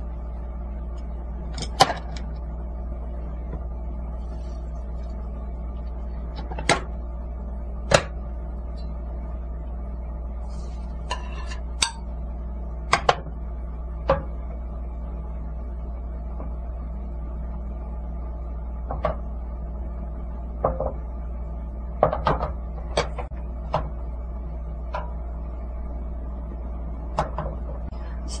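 A metal spoon clicking and tapping against egg bowls and a nonstick frying pan, a dozen or so sharp, scattered knocks, over a steady low hum.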